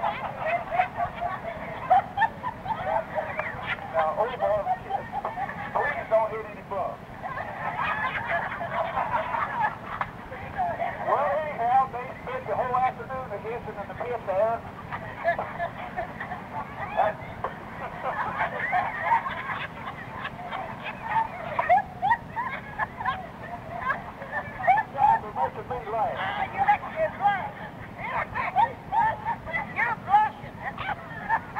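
A busload of passengers laughing and talking over one another, many voices at once, without a pause, over a steady low rumble, with the thin, muffled sound of an old cassette recording.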